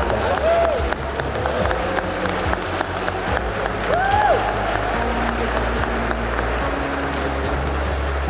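Congregation applauding after the wedding vows, a dense steady patter of clapping, with two short whoops rising and falling, one about half a second in and one around four seconds.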